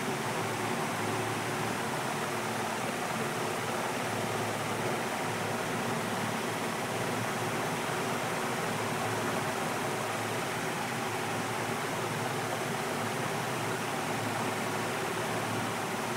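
Steady rushing of aquarium water, an even hiss that does not change.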